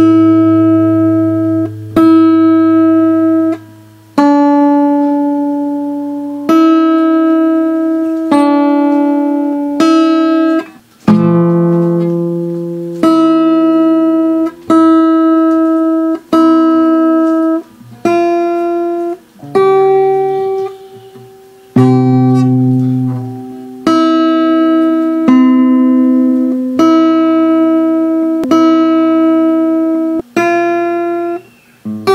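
Acoustic guitar played fingerstyle at a slow teaching pace: single notes and small chords plucked one at a time, about every one and a half to two seconds, each left to ring and fade before the next.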